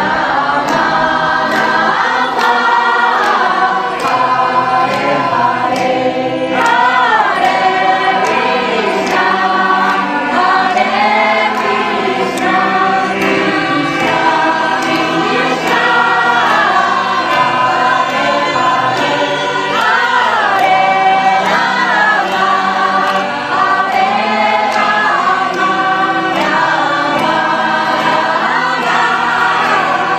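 A group of voices singing a devotional kirtan together, with hands clapping to a steady beat.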